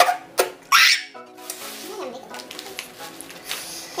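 Non-word vocal reactions to a foul-tasting jelly bean, with a short, sharp breathy burst just under a second in, over faint background music.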